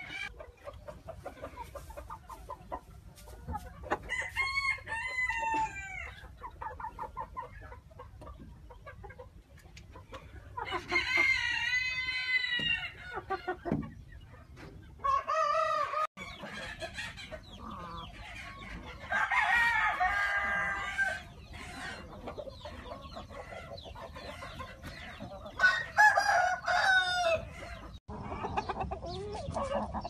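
Sumatra roosters crowing again and again, about four long crows several seconds apart, the longest lasting about three seconds, with clucking in between.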